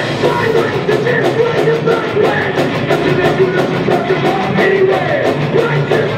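A loud rock band playing live: distorted electric guitars, bass, and drums with a steady run of cymbal hits.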